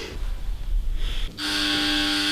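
A single steady held musical note, flat in pitch, starts about a second and a half in and holds for just over a second.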